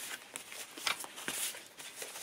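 A stack of paper colour cards being handled and leafed through by hand: a few faint, short papery flicks and taps.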